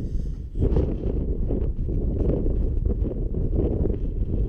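Wind buffeting the microphone: a loud, low, rumbling roar that picks up about half a second in.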